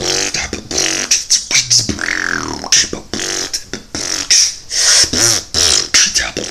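Solo vocal beatboxing: grungy bass sounds under sharp, hissing snare-like hits in a quick rhythm, with a falling pitch sweep about two seconds in.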